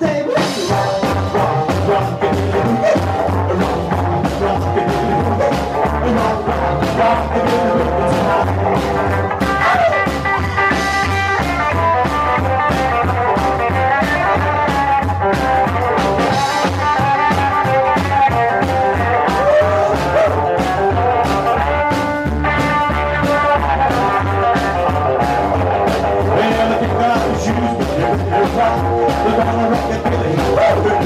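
Live rockabilly band playing a driving boogie on drum kit, hollow-body electric guitar and upright bass, with a steady beat.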